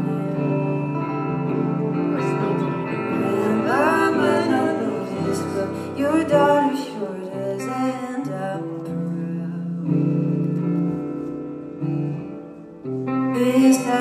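A live song: a Fender electric guitar and an acoustic guitar play together, with singing over them. The music thins out briefly near the end, then comes back in full.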